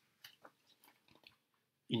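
Paper page of a picture book being turned: a few faint, short rustles and crinkles of paper.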